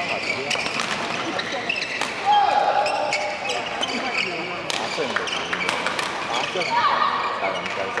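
A badminton doubles rally: sharp racket hits on the shuttlecock several times over, mixed with squeaking shoes on the court floor. Voices carry in the background of the large hall.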